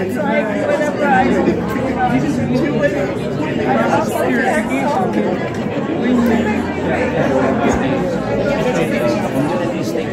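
Chatter of many people talking at once in a large hall, several conversations overlapping.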